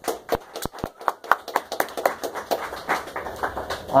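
Audience applauding: a small crowd's individual hand claps, dense and irregular, starting abruptly.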